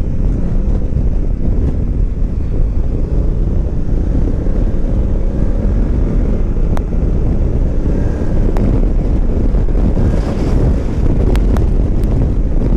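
Wind rushing over the microphone, with the Honda Africa Twin's 998 cc parallel-twin engine running steadily underneath while the dual-clutch gearbox holds second gear.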